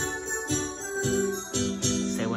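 Korg Krome keyboard playing sustained chords, with a bright percussive hit about twice a second.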